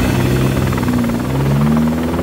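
A car engine running steadily, its pitch dipping and then climbing again near the end.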